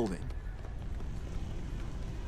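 Steady low rushing noise of the dust and debris cloud from a collapsed skyscraper rolling through the street.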